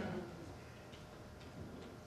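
A quiet pause: faint room tone with three or four faint ticks.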